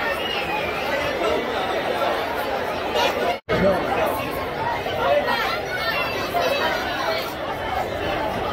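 Spectators chatting, a steady babble of overlapping voices with no single clear speaker. The sound cuts out abruptly for a split second a little past the middle.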